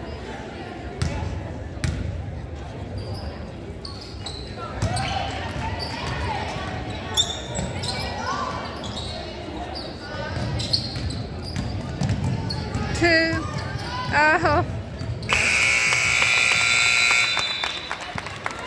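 Basketball game in a gym: the ball bouncing, players and spectators shouting, and sneakers squeaking on the hardwood. Then a scoreboard buzzer sounds, loud and steady for about two and a half seconds near the end.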